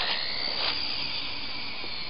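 Syma S301G radio-controlled toy helicopter's electric motors spinning up with a rising whine as it lifts off the pad, then holding a steady high whine in the air.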